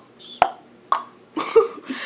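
Lips smacking: two sharp smacks about half a second apart, then a brief bit of voice near the end.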